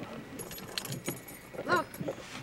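Light clinking and rattling starting about half a second in, with a voice saying "Look" near the end.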